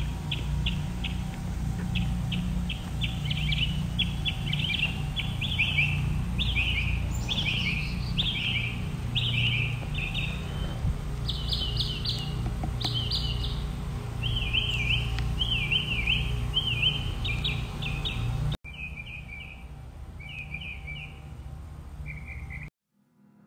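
Songbird song: series of quick, repeated whistled chirps and down-slurred notes, over a steady low rumble. Near the end the sound cuts to a quieter stretch with a few more chirp phrases.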